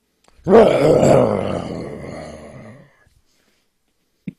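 Tyrannosaurus rex roar sound effect: one long roar, loudest at its start about half a second in, fading away over about two and a half seconds.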